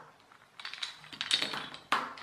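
Wooden burr puzzle pieces clicking and knocking together as the puzzle is pulled apart and the sticks are set down on a table: a quick run of light wooden clacks starting about half a second in.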